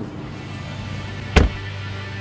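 Electric window motor of a Tesla Model S running as the door glass moves, a steady hum, with one sharp thump about one and a half seconds in.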